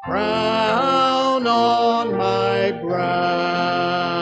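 Congregation singing a hymn in a series of long held notes that slide from one to the next.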